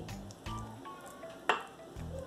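A fork stirring thick batter in a glass bowl, scraping softly, with one sharp clink of metal against the glass about one and a half seconds in. Background music plays underneath.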